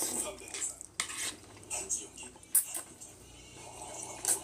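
Close-up eating sounds from a tray of jjajangmyeon: noodles and vegetables being slurped and chewed, with chopsticks clicking against the tray. A few sharp clicks stand out, the loudest a little past halfway.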